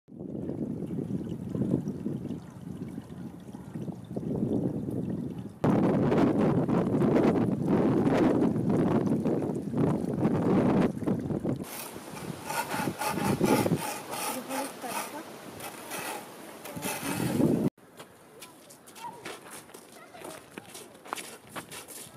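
Outdoor sound that changes abruptly several times. In one stretch, a plastic ice scraper rasps again and again across the iced-over rear window of a pickup truck.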